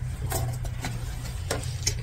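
A few light clicks and taps, about five in two seconds, as a deck of oracle cards is handled on a wooden table. A steady low hum runs underneath.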